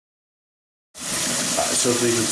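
Silence for about a second, then a kitchen sink tap running hot water, a steady rushing that starts abruptly, with a man's voice coming in near the end.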